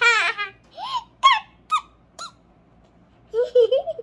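A young girl's laughter tailing off, then a few short, high, rising vocal squeals over the next second and a half. A lower vocal sound follows near the end.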